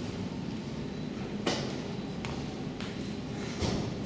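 Hall room tone with a few sharp knocks and thumps from movement on a stage, the loudest about one and a half seconds in and another near the end as a performer pushes up from a metal-framed chair.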